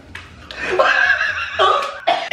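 Loud laughter that breaks out about half a second in and goes on in bursts.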